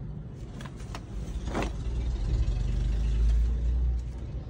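A low rumble that swells over the second half, with a few short rustles and clicks of denim jeans being handled.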